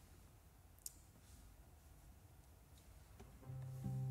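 Near silence: faint room tone, with a single short click about a second in. Shortly before the end a low steady tone begins.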